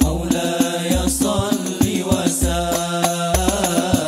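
Young men singing an Islamic sholawat together in unison, a chant-like melody, over Al Banjari frame drums (terbang): deep bass strokes about once a second with quick, sharp higher drum beats between.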